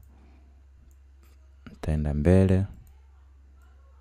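A few faint computer mouse clicks over a steady low hum, with one short spoken word about two seconds in.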